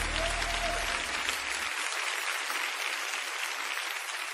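Congregation applauding: a steady, even clapping noise. Low sustained backing music fades out under it within the first two seconds.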